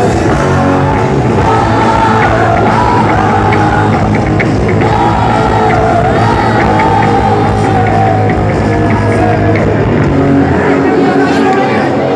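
Live rock band playing loud through a phone's microphone in the crowd, with a long, wavering sung melody over steady bass and drums. The bass and low end drop away near the end.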